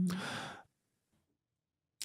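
A short breathy sigh from a person, lasting about half a second, trailing straight off the end of a murmured "mm-hmm".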